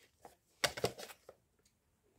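A few short, light clicks and knocks as a white plastic plug adapter is picked up off a table and moved aside.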